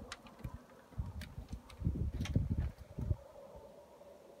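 Low, uneven rumbling on the microphone that comes and goes, with a few light clicks.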